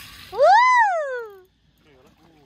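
A person's long, high excited whoop, rising and then falling in pitch, about half a second in. A fainter voice follows near the end.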